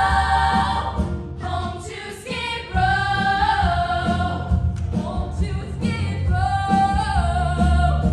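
A stage ensemble of young women singing together over a bass-heavy instrumental accompaniment in a musical-theatre number, holding several long notes.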